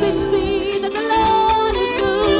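A worship song sung over instrumental accompaniment, with a long, wavering held note about a second in.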